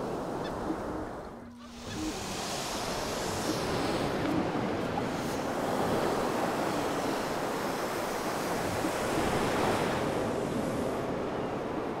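Ocean surf breaking and washing up over a sandy beach, a steady rushing wash that dips briefly about a second and a half in, then swells louder in two surges.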